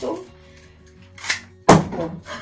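Florist's shears cutting through a thick bunch of flower stems: a short snip about a second and a quarter in, then a loud, sharp crack near the end as the stems are cut through.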